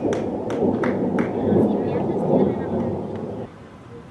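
Wind buffeting the camera's microphone: a loud low rumble that cuts off abruptly about three and a half seconds in. Several sharp clicks sound in the first two seconds.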